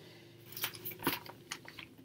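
Faint, scattered rustles and crinkles of a magazine page and a piece of cross-stitch fabric being handled, starting about half a second in.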